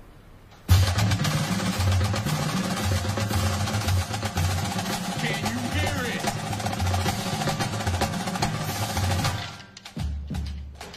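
A marching band's drumline comes in suddenly about a second in, snare and bass drums playing together, and stops shortly before the end.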